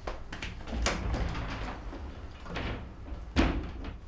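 A wooden interior door being opened and shut, with a couple of softer knocks before it closes with a sharp bang about three and a half seconds in.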